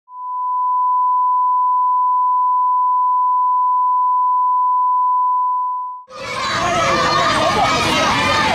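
A steady pure electronic tone at 1 kHz, like a test tone, fading in and holding for about six seconds before fading out. Then crowd noise with many voices calling out begins abruptly.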